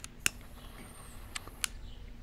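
A few sharp, separate clicks, four in two seconds at uneven spacing, from hands tapping and handling a small black tablet-style device.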